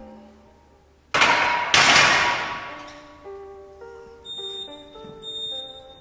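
Loaded barbell racked onto the steel uprights of a bench press: two loud metal clanks about half a second apart, ringing out over a second or two. Background music plays underneath.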